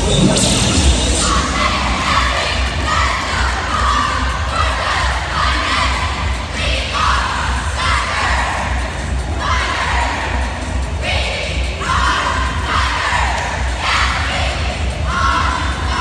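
Cheerleading squad shouting a cheer in unison, a loud burst of many voices every second or two, over crowd noise.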